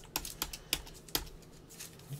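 Typing on a computer keyboard: a few sharp, irregularly spaced key clicks, the strongest in the first second or so.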